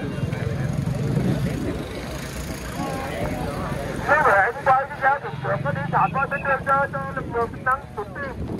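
A motorbike engine running at low speed, a steady low rumble, then a person's voice speaking from about four seconds in.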